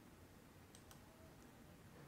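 Near silence: room tone, with two faint clicks close together a little under a second in, from someone working at a computer.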